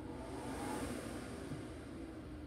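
The electric inflation blower of an inflatable bounce house running, a steady low hum and rush of air.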